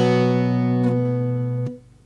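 Bağlama (long-necked Turkish saz) ringing on the song's final strummed chord, held for over a second and a half, then stopping abruptly.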